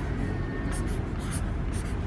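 A pen scratching across paper in a few short strokes as small boxes are drawn, with background music underneath.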